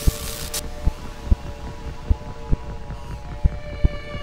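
Sustained, brooding outro music with low, sharp thumps every half-second or so. A short crackling burst at the very start, an electric zap effect for the animated lightning bolt, sits over it.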